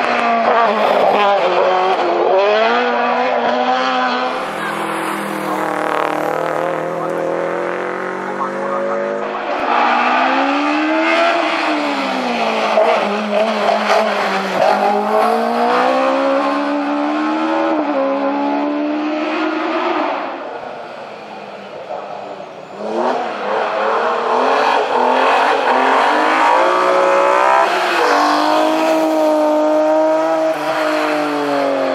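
Hillclimb race cars passing one after another at full throttle, each engine revving up and dropping back at every gear change. The sound eases off briefly about two-thirds of the way through, before the next car's engine picks up again.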